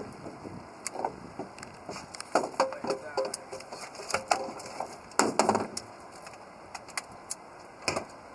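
Handling noises on a fishing boat's deck as a landed catfish is unhooked: scattered clicks and knocks, heaviest in clusters a couple of seconds in, about four seconds in and just past five seconds, with a few brief fragments of indistinct speech.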